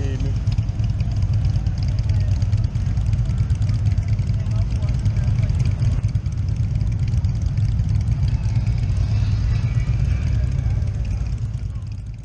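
Harley-Davidson V-twin motorcycle engine running as the bike rides slowly along a street, a steady low rumble.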